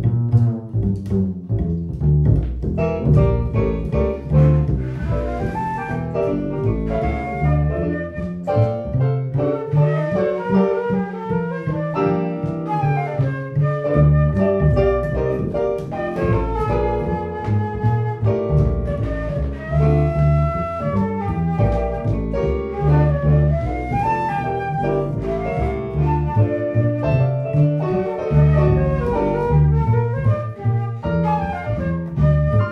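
Live jazz trio playing: plucked upright double bass and piano, with a concert flute playing the melody over them.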